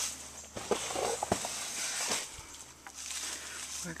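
Footsteps through dry leaf litter and twigs, irregular light rustles and snaps, with handling noise from a handheld camera.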